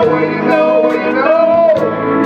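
Live band playing an instrumental passage: a melody line with bending notes over a steady bass and chords, with drums and cymbal hits.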